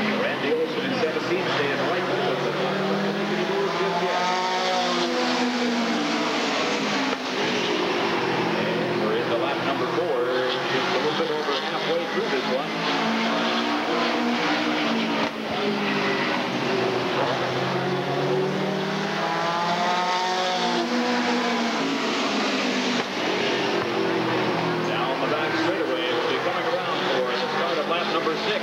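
A pack of super stock race cars running at racing speed on a short oval track. The engine note swells and rises in pitch, then falls, again and again, every several seconds, over a steady din of many engines.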